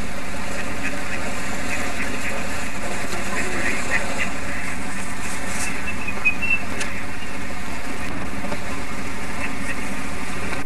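Steady outdoor background noise with faint, indistinct voices, and a couple of brief high chirps about six seconds in.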